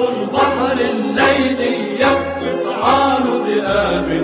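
Arabic song with a choir singing long, swelling phrases over orchestral accompaniment and a moving bass line.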